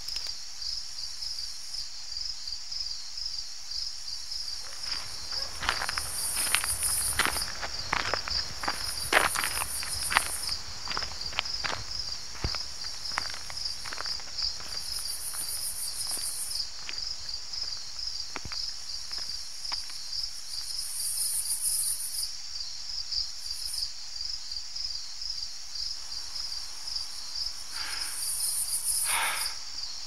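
Night-time outdoor ambience of crickets chirring steadily, with a second, higher insect trill switching on and off every few seconds. Footsteps walk through it, clearest from about five to thirteen seconds in.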